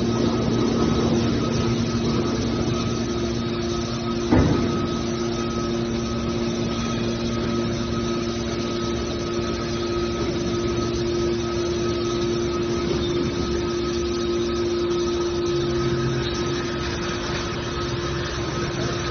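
Hydraulic scrap metal baler running: a steady hum from its hydraulic power unit as the press lid folds down under the cylinders, with a single sharp metal clank about four seconds in.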